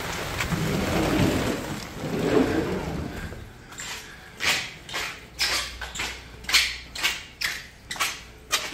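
Steady rain hissing, with a low rumble in the first few seconds. About halfway through the rain fades and footsteps on a hard floor take over, sharp and about two a second.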